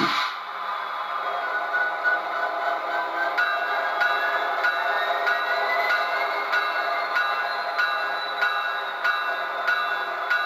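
Soundtraxx Tsunami DCC sound decoder in an HO-scale SD70ACe model playing the diesel locomotive's engine running through the model's small speaker, just after being started up. A steady engine drone carries a whine that climbs in pitch from about two seconds in.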